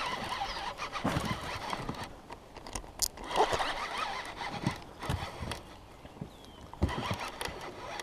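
Baitcasting reel cranked quickly while fighting a hooked fish: uneven whirring from the reel's gears, with scattered clicks and a few brief squeaks.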